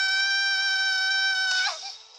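A cartoon character's female voice letting out one long, high scream at a steady pitch, which cuts off near the end.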